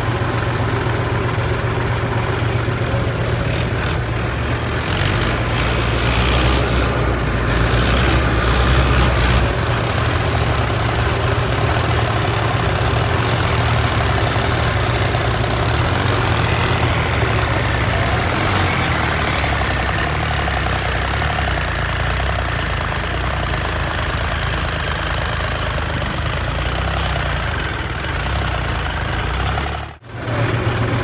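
Diesel farm tractor engines running steadily, the low engine note shifting a little about ten seconds in.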